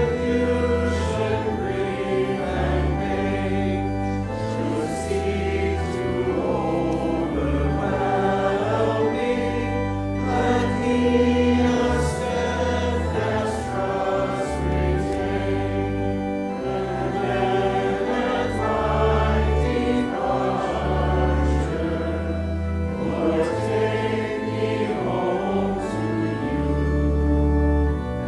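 A congregation singing a hymn verse together, accompanied by a pipe organ holding long, steady bass notes under the melody.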